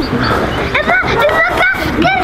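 A child's high-pitched, wordless calls that waver in pitch, starting a little under a second in and running on.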